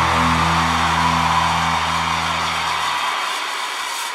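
A rock band's final distorted chord held and ringing out live. Its low bass notes drop away about three seconds in while the rest slowly fades.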